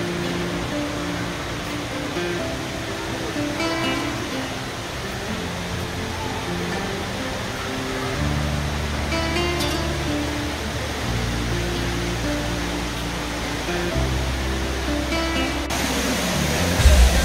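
Background music of held, sustained notes, with a deeper bass coming in about eight seconds in, over a steady rushing noise.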